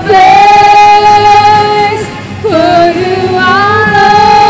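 Several women singing a worship song in unison through microphones, holding long sustained notes with a step down in pitch about halfway through, over live instrumental accompaniment.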